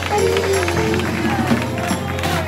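Live gospel music: a voice singing with held, gliding notes over keyboard with a steady bass, and hands clapping along in rhythm.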